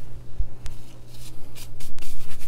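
Plastic-gloved hands rubbing butter into flour in a stainless steel bowl: a soft, uneven rustling and scraping, with one sharp tick under a second in.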